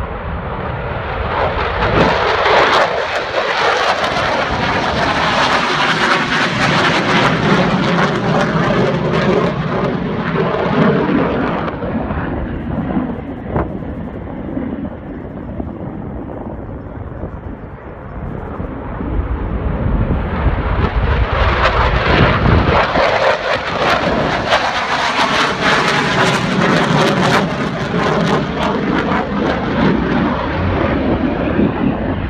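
Fighter jet flying low past with its jet engine running loud. The sound swells about two seconds in, its pitch gliding down as the jet passes, eases for several seconds in the middle, then builds again from about twenty seconds in.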